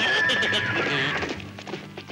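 A horse whinnying as a cartoon sound effect: a loud, high cry that starts suddenly and fades out over about a second and a half, with music underneath.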